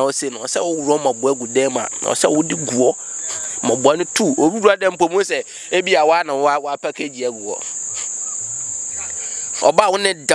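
Crickets chirring in one steady, high-pitched, continuous note under men's voices, then heard on their own for about two seconds near the end.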